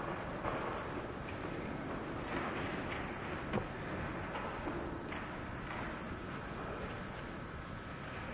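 Steady hiss and low rumble of a church during a pause, with faint rustling and a few soft knocks, typical of a congregation sitting down in the pews after the Gospel.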